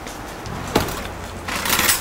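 Stovetop cooking sounds: a single sharp utensil clink about three-quarters of a second in, then a short sizzling hiss near the end as the pan is worked.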